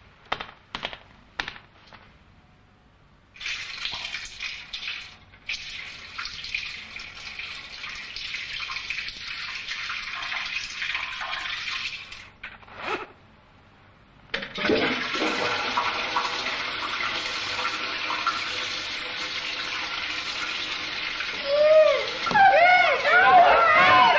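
Water running in a toilet in two long stretches with a short break between them, after a few light clicks at the start.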